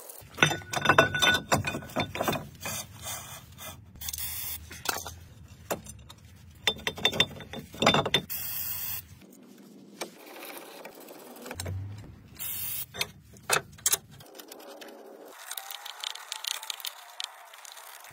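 Irregular metal clicks, knocks and clanks from hand tools and steel brake parts being handled while a brake rotor and caliper are worked on, coming in short separate bursts with brief quiet gaps.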